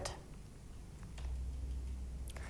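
A quiet pause with a faint steady low hum that grows slightly stronger about a second in, and a few faint ticks.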